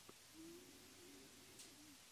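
Near silence: room tone, with a faint low wavering tone through most of the pause and a soft click at the start.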